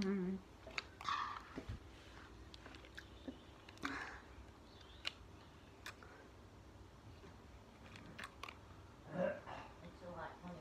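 Faint, scattered wet mouth clicks and smacks of someone licking sauce out of a small plastic dipping-sauce pot held to the mouth, with a few brief louder bursts.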